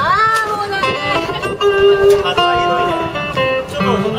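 Wordless sung phrase during a band sound check: a voice slides up at the start and then holds a short run of steady notes at changing pitches, with acoustic guitar under it.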